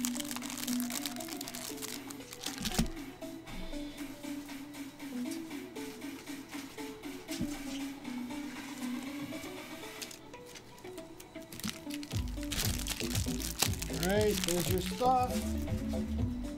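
Card packaging crinkling in the hands in short spells near the start and again about two-thirds through, over background music. The music turns louder and bass-heavy near the end.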